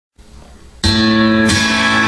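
Acoustic guitar strummed, opening with a loud chord a little under a second in and a second strum about half a second later, the chords ringing on. Before the first chord there is only faint room noise.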